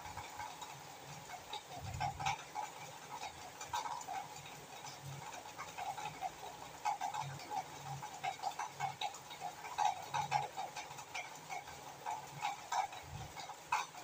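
Onion-spice masala cooking in a steel kadhai, bubbling with many faint, irregular little pops, and a few light clicks of a spoon against the steel.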